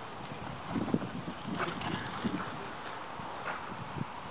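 Footfalls on grass: a few dull thuds at uneven spacing over a steady outdoor background noise.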